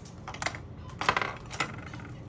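Makeup brushes and small plastic makeup cases clicking and clattering as they are rummaged through to find a brush: a few light taps, then a quicker cluster of clicks about a second in.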